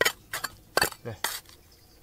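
Steel hand trowel scraping and clinking against stones and gravel as it digs into rocky soil: several sharp scrapes in the first second and a half, then quieter.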